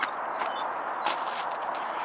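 Steady outdoor background noise with a few light taps, about three in two seconds, and faint high chirps.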